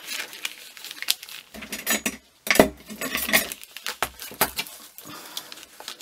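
Hands handling the papers of a handmade junk journal: paper rustling with many light clicks and clinks as a tucked paper pocket is worked open.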